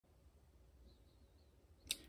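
Near silence: faint room tone, with one brief click just before the end.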